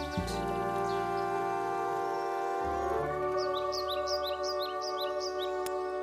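Music: the band holding the song's long final chord, with a quick run of short high chirps over it in the second half.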